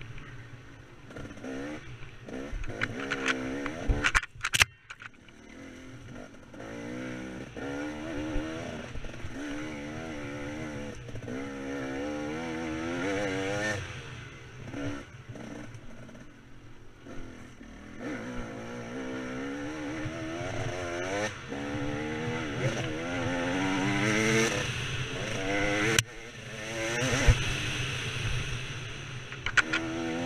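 KTM 300 two-stroke dirt bike engine ridden hard, its pitch rising and falling again and again as the throttle is opened and shut. A sharp knock comes about four seconds in, and another near the end.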